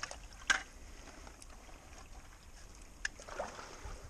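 Faint splashing and sloshing of shallow creek water, broken by a sharp knock about half a second in and a lighter one about three seconds in.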